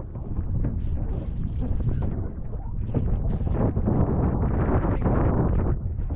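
Strong wind gusting over the microphone on an outrigger canoe at sea. The buffeting rises and falls with the gusts and is loudest in the second half.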